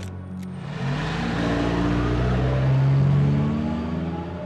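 A van's engine revving up as the vehicle pulls away after the handbrake is released. It grows louder to a peak about three seconds in, then eases off.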